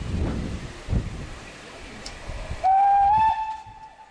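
Steam locomotive working a train, with a couple of heavy exhaust beats and steam hissing from its open cylinder drain cocks. Near the end comes a loud steam whistle blast of under a second, one clear tone that steps slightly up in pitch.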